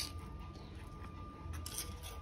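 Quiet room tone with a thin steady electrical whine, and one faint tap near the end.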